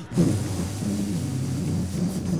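A man's voice making a low, drawn-out rumbling sound into a microphone, imitating the coming of the Holy Spirit on the day of Pentecost.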